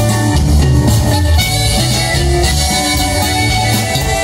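A norteño band playing live in an instrumental passage with no singing: accordion and bajo sexto over bass and drums, loud and steady.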